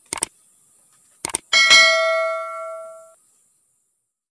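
Subscribe-button animation sound effect: two short mouse clicks, then a notification bell ding that rings out and dies away over about a second and a half.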